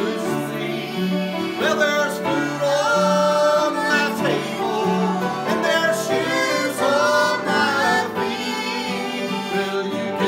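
A man and a group of girls singing a gospel song together, accompanied by a strummed acoustic guitar.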